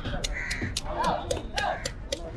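Knife scraping the scales off a red snapper on a wooden block, in quick strokes about four or five a second. Crows cawing twice in the middle.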